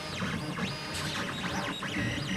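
Background music with a desktop FDM 3D printer running under it, its stepper motors whining in short arcs of rising and falling pitch as the print head moves.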